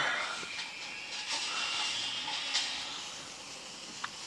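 Paper coupon insert pages rustling and sliding as they are flipped through, a soft hiss that eases off toward the end.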